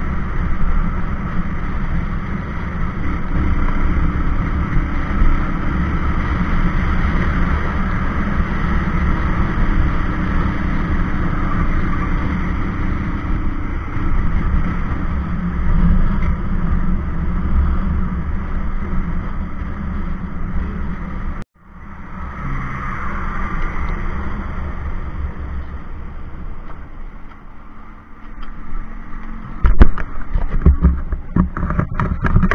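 Wind rushing over the microphone of a moving Bajaj Pulsar 220F, with the bike's single-cylinder engine running underneath at road speed. About two-thirds of the way through the sound cuts off for an instant, then resumes and gradually quietens as the bike slows.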